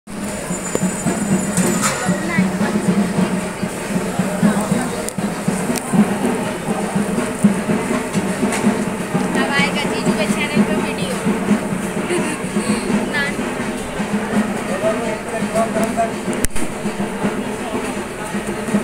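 Busy ambience of a street-food stall: indistinct crowd chatter with music playing in the background over a steady low drone.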